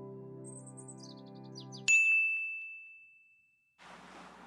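A held chord of background music with a few short chirps over it, cut off about two seconds in by a single bright ding that rings and fades away over about a second and a half.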